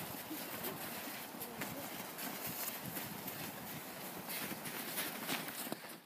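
Children scuffling in the snow: footsteps crunching and shuffling in snow, with children's voices now and then over a steady outdoor hiss. It cuts off abruptly at the end.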